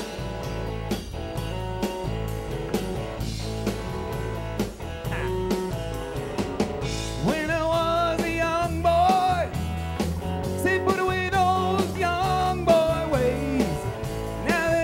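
Live country-rock band playing an instrumental passage: a steady drum-kit beat, electric bass and electric guitar. About halfway in, a lead melody with bending, wavering pitch comes in on top.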